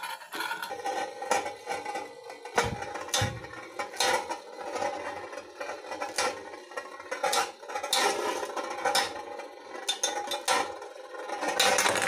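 Two Beyblade spinning tops, a hand-spun custom Pegasus and an L Drago Destructor, spin on a metal dish. They make a steady whirring ring, broken by repeated sharp metallic clicks as the tops strike each other and the dish.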